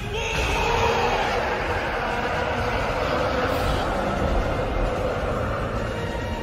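A long, slowly falling roar starts suddenly over a deep rumble and fades after about four seconds: Eren's Attack Titan roaring as he transforms, in a fan-remade English-dub roar.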